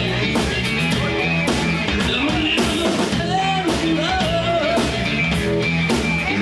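Live rock band playing loudly: electric guitar, bass guitar and drum kit with regular cymbal hits, with a singer's voice over the top.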